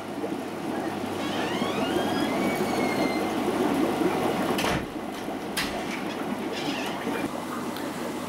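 Small internal aquarium moving-bed filter running, its sintered glass media balls packed in tight so they vibrate rather than tumble: a steady churning water noise, with two knocks about halfway through.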